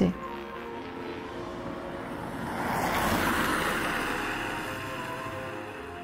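Soft background music of steady held tones, with a rushing noise that swells to a peak about halfway through and then fades away.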